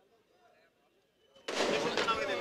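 Faint voices, then about one and a half seconds in a sudden, very loud, distorted burst of voices close to an overloaded microphone, like shouting.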